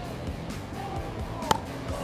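A pickleball paddle striking the perforated plastic ball on an underhand serve: one sharp pock about a second and a half in, over quiet background music.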